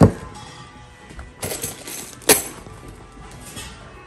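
A few sharp clinks and knocks of hard items set down on a wooden checkout counter: one at the start, a short cluster about a second and a half in, and the loudest just after two seconds, over background music.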